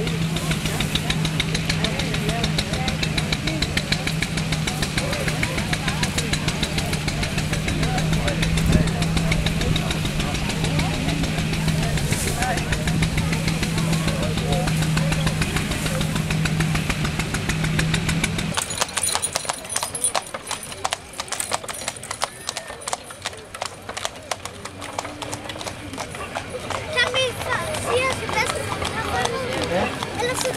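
A machine runs with a steady low drone and fast ticking, then stops abruptly about two-thirds of the way through. After that come people's voices over irregular clattering that fits horse hooves and a horse-drawn wagon on a road.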